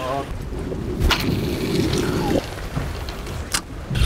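Muffled rumble of sea water and wind against the microphone, with two sharp clicks, one about a second in and one near the end.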